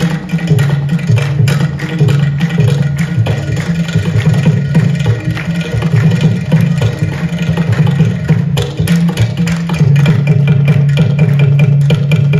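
Live Carnatic percussion over a concert sound system: mridangam and ghatam playing a fast, dense run of strokes, with a steady low tone underneath.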